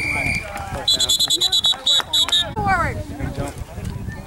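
A referee's whistle: a brief first blast, then a quick run of short blasts, about six a second, lasting under two seconds, over spectators' voices and shouts.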